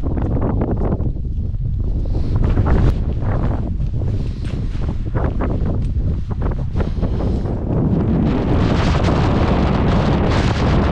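Strong, gusting hill wind buffeting the microphone: a loud low rumble that surges and drops irregularly, turning into a steadier, fuller rush in the last couple of seconds.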